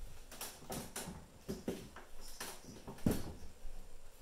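A string of short knocks and clicks as a flat-screen TV is handled and lifted off its wall bracket. The loudest knock comes about three seconds in.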